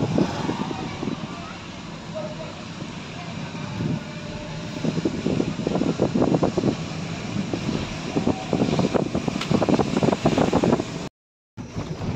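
Steady road and engine noise of a moving car heard from inside the cabin, with people's voices talking indistinctly over it through much of the stretch. The sound drops out briefly near the end.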